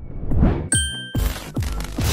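Channel logo sting sound effect. A short whoosh is followed, about two-thirds of a second in, by a bright bell-like ding that rings for about half a second and stops abruptly, with a few low thumps beneath.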